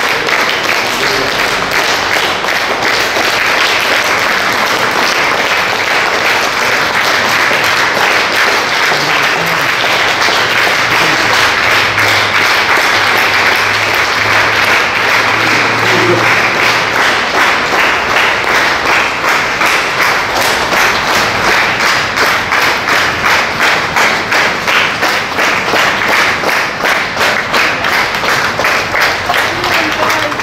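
Crowd applauding, a long unbroken ovation that settles into rhythmic clapping in unison in the second half.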